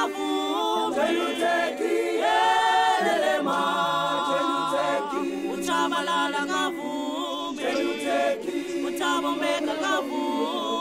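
A cappella choir singing in harmony, unaccompanied, with several voices holding long notes over a steady low sustained note.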